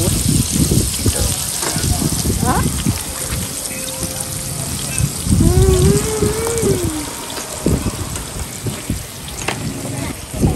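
A tabletop grill sizzling steadily, with a woman's long hummed 'mmm' of enjoyment, rising and falling, about five and a half seconds in as she eats a grilled oyster.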